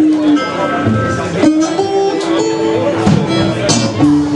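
Live acoustic blues: acoustic guitar played together with a harmonica that holds long notes and slides between them.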